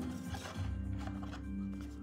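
Soft background music holding sustained low notes that swell in about half a second in, with a few faint clicks of tarot cards and a paper booklet being handled.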